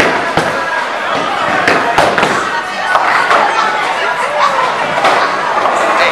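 Bowling alley clatter: several sudden knocks and crashes of balls and pins in the first three seconds, over the chatter of a crowd.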